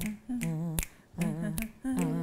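Finger snaps keeping a steady beat, a snap a little under once a second, with a voice humming short wavering notes between them as a beat for an improvised song.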